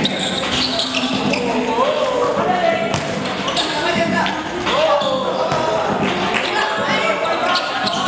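Live basketball court sound: several voices shouting and calling over one another, with the ball bouncing on the court and short sharp clicks from play.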